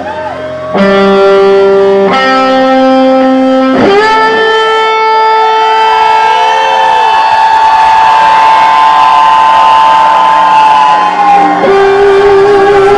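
Rock band playing live and loud, led by distorted electric guitar. Sustained chords come in about a second in and change twice, then one note is held for about seven seconds with bent notes around it, until the chord changes near the end.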